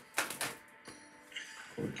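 A deck of tarot cards being handled and shuffled: a sharp snap of the cards a moment in, then a few light papery clicks and riffles, over faint background music.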